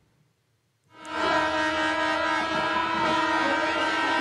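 Noise of a large street protest crowd with horns blowing in long, steady blasts, starting about a second in after a moment of near silence.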